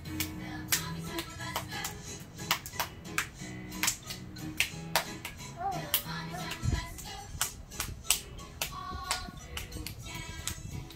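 A young child clapping his hands unevenly along to children's music, the sharp claps standing out over the tune.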